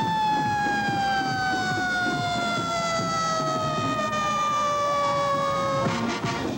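Fire truck siren wailing. It peaks right at the start, then falls slowly and steadily in pitch over about six seconds.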